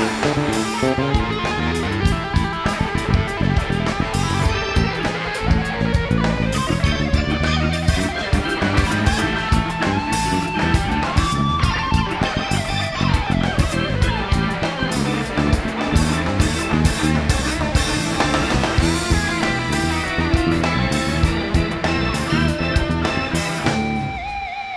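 Live band playing an instrumental break: an electric guitar solo over drum kit, bass guitar and keyboards, with a steady driving beat.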